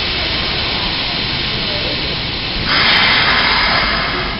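Steady noise of electric trains standing at a station platform, then a loud hiss of air starts about three seconds in and holds.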